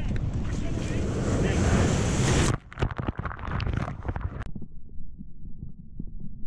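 Surf rushing loudly in over rocks and building for about two and a half seconds as a rogue wave breaks over the camera, then the sound suddenly changes to scattered knocks and a muffled low churning as the camera is tumbled in the foaming water.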